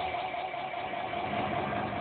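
Steady background hiss with a faint constant hum, heard in a pause of a low-fidelity recording.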